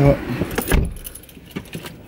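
A bunch of keys jangling and clinking, busiest in the first second and then thinning to a few faint ticks.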